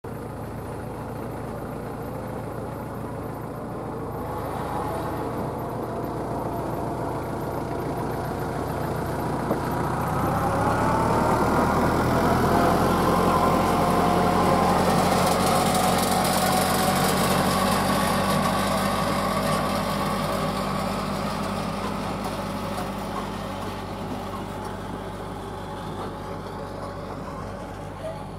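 A motor vehicle engine running steadily, with its pitch rising about ten seconds in; it grows louder toward the middle and then fades somewhat.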